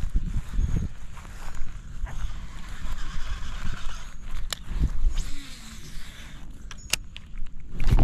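A steady low rumble on a body-worn camera's microphone, with a few sharp clicks as a baitcasting reel is handled, the last of them just as the rod swings into a cast near the end.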